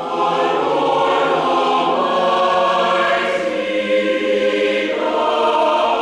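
Mixed choir singing, entering suddenly and loudly on a full chord at the start, then holding long notes.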